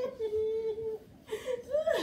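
A voice whimpering in playful mock pain: one long held cry for about the first second, then a shorter cry rising in pitch near the end.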